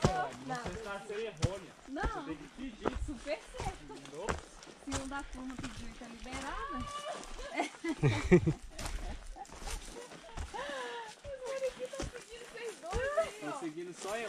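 Indistinct talking among hikers, with scattered footsteps and knocks on the trail.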